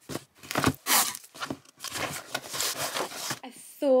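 Flat cardboard mailer box being handled, with papery scraping and rustling in several short bursts.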